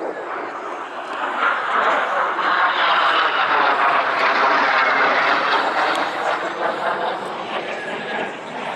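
L-39 Albatros jet trainer flying past: the jet noise swells over the first couple of seconds, stays loud through the middle, and fades toward the end.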